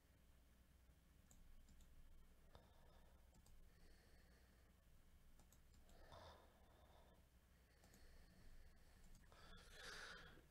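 Near silence, with faint scattered computer mouse clicks and a few soft breaths.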